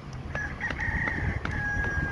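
A rooster crowing once: a call lasting a bit under two seconds that ends on a long held note, over a steady low rumble.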